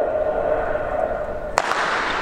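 Starter's pistol firing once, a sharp crack about a second and a half in, starting the relay heat; spectators' cheering swells right after it. Before the shot a held, steady-pitched sound hangs over the stadium.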